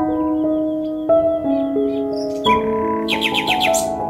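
Gentle instrumental background music of held keyboard chords, with birdsong mixed in: a warbling high trill in the first half and a quick run of about seven chirps near the end.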